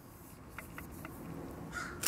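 A few faint, short bird calls.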